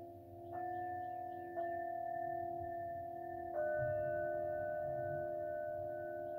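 Metal singing bowls struck three times, about half a second, one and a half seconds and three and a half seconds in. Each strike adds new ringing tones over a lower bowl tone that sustains throughout.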